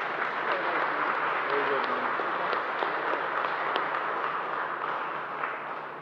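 A small group of people applauding; the clapping tapers off near the end.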